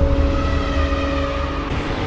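Cinematic intro sting: a deep rumble under several steady droning tones, following a whoosh. Near the end the tones stop and a fresh rush of hiss comes in.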